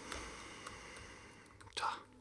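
A man's breathy exhale of frustration, a soft sigh that fades away, with one faint click partway through, then a short muttered "duh" near the end.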